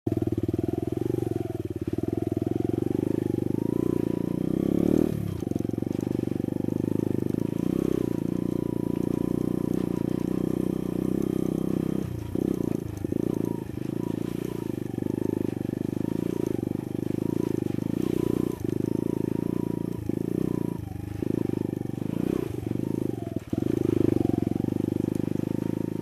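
Sinnis Blade trail motorcycle's engine running as it is ridden along a rough dirt lane, the throttle eased off briefly several times in the second half.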